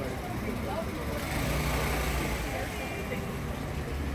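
A motor scooter's engine running close by, briefly louder for about a second in the middle, over the scattered voices of people on the street.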